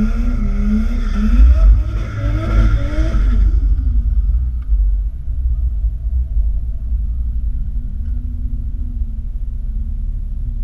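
Turbocharged Toyota 2JZ engine idling, heard from inside the car's cabin as a steady low rumble. For the first three and a half seconds a louder squeal with a wavering pitch rides over it, then stops.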